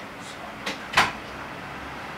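Two light clicks, then a louder sharp knock about a second in, over a steady background hiss.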